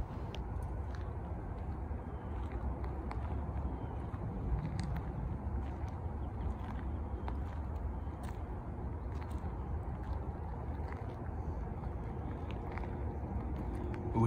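Steady low outdoor rumble with faint scattered ticks throughout.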